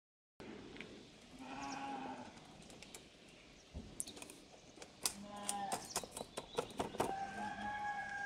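Faint clicks of small metal screws and nuts being handled and fitted into the joints of a clear acrylic arena by hand, growing more frequent in the second half. A few faint pitched calls sound in the background, the last held for about a second near the end.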